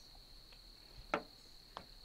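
Faint, steady high-pitched insect drone, with two brief soft handling sounds about a second in and near the end as the wick is pulled off the rubber bulb.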